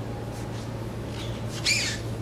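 A steady low hum in an empty indoor ice arena, with one short high squeak about three-quarters of the way through.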